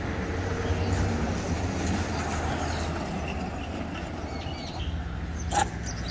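Steady low rumble of background traffic, with one short sharp knock about five and a half seconds in.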